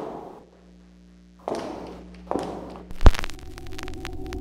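Horror trailer sound effects: three rushes of noise that each start suddenly and fade away, over a faint hum, then a sharp, very loud hit about three seconds in, followed by a steady low drone.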